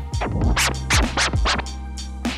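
Turntable scratching of a sample driven by a Serato control vinyl through a Pioneer DJM-S5 mixer, with the Scratch Cutter muting the backward strokes so that only the forward strokes are heard. About six quick strokes in two seconds, over a steady low bass tone.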